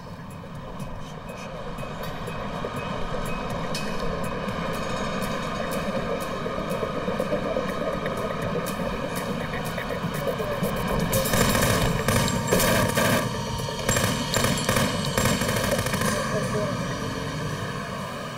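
A rapid burst of gunfire: many shots in quick succession beginning about eleven seconds in and lasting several seconds. Before it, a tense sound bed swells steadily louder.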